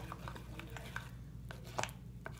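A few light, scattered clicks and taps of a spoon handled against a plastic mixing bowl, over a low steady hum.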